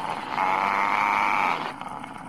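Anime energy-attack sound effect with a drawn-out, roar-like cry: a dense rushing sound starts about a third of a second in, holds steady for well over a second, then drops away near the end.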